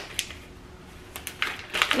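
Light clicks and crinkles from handling a crust-mix packet and a spoon in a ceramic bowl. One click comes just after the start, then a quick run of several in the second half.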